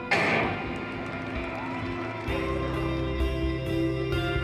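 Background music with guitar, opened by a sudden loud crack that fades away over about a second: the starter's pistol for an 800 metres race. A deep bass comes in a little past halfway.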